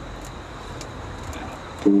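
Homemade waste-oil burner running: a steady low rushing noise of blower air and burning oil vapour, with a few faint clicks.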